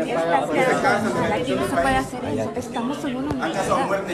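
Several people's voices arguing at once, talking over one another in a heated exchange in Spanish.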